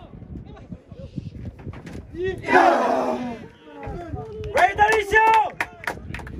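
Shouted calls on a football pitch during play: one loud, drawn-out shout about two and a half seconds in, then a quick run of short shouts near the end.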